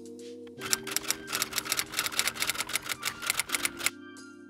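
Soft background music with held notes, over a rapid, uneven run of typewriter key clicks that starts about half a second in and stops just before the end: a typing sound effect.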